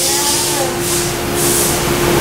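Electric valve actuator running as it slowly drives a choke valve's disc toward the full-open position: a steady hum at one pitch over a strong, even hiss.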